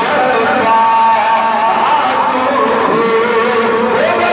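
Devotional chanting in a slow melodic line with long held notes, bending in pitch, and no beat.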